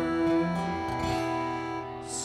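Acoustic guitars strumming, with an accordion holding chords underneath: the instrumental accompaniment of a slow folk ballad between sung lines.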